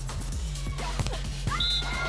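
Background music with a steady low bass line, over which come a few short sharp knocks, the clearest about a second in. Near the end, a held, bright, high tone sets in and carries on.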